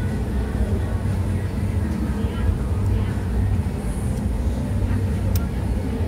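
Busy street ambience: a steady low rumble with faint voices in the background.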